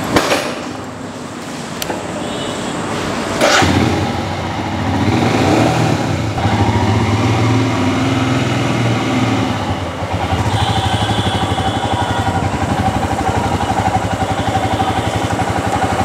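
Royal Enfield Himalayan's 411 cc single-cylinder engine starting about three and a half seconds in, then running steadily with a few small rises in pitch as the motorcycle is ridden off at walking pace.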